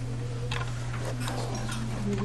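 A steady low hum with a few faint clicks and taps.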